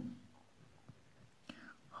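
Faint pen strokes on paper: a few soft ticks and one sharper click about a second and a half in. The room is otherwise almost silent, with a faint breath just after the click.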